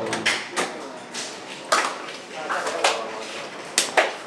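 Indistinct voices in a small room, broken by about six sharp, irregular knocks and slaps.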